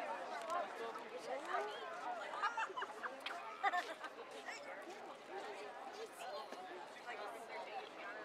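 Crowd chatter: several voices talking over one another, none clear enough to make out.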